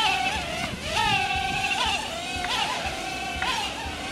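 Holy Stone HS190 micro drone's tiny motors and propellers whining in flight: a high buzzing tone whose pitch shifts up and down several times as the throttle changes.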